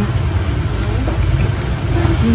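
Steady low engine rumble of motorbike and street traffic, with faint voices in the background.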